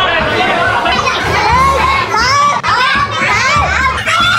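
A group of people shouting and cheering excitedly, many voices overlapping.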